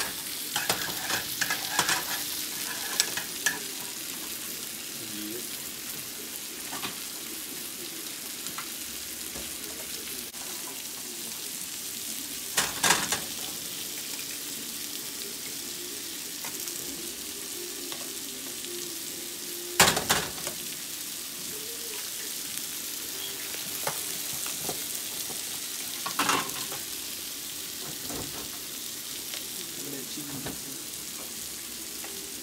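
Salmon fillets and shrimp sizzling in a frying pan, a steady hiss, with three sharp knocks, the loudest about two-thirds of the way through.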